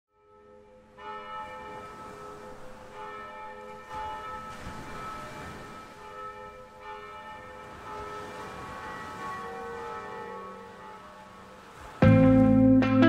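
Church bells ringing: several struck bell tones overlapping and ringing on, starting about a second in.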